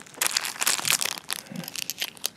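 Plastic bags of electronic components crinkling and crackling as they are handled in a clear plastic kit tray, a rapid, irregular run of small crackles.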